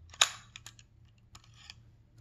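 A few small metallic clicks of a key being turned in a brass lock cylinder, the sharpest about a quarter second in and lighter ones after. Turning the key moves the cylinder's blade so that it no longer blocks the lock's locking mechanism.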